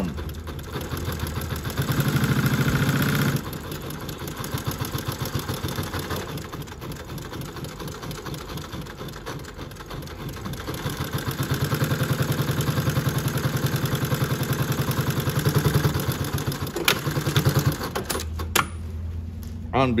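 A JUKI LU-2860-7 industrial double-needle walking-foot lockstitch machine sewing through heavy layered denim in bursts of rapid stitching. It is loudest and fastest about two seconds in and again from about eleven to sixteen seconds. Near the end come a few sharp clicks as it stops by itself.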